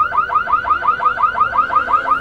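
Car alarm sounding: a fast, regular electronic chirp repeated about seven times a second.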